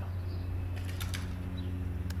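Played-back field recording of three birds flying fast past the microphone, their wings heard as a brief faint flutter that seems to stay in one spot rather than moving past. A steady low hum runs underneath.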